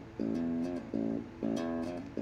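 A cheap beginner's electric bass guitar played through its bundled practice amp: a run of single plucked notes, about five in two seconds, each held briefly before the next. A steady low hum runs underneath.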